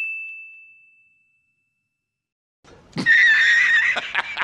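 A bright, bell-like ding that rings out and fades over about the first second and a half. After a short silence, a high, wavering, voice-like cry starts about three seconds in: the opening of a laughing sound effect.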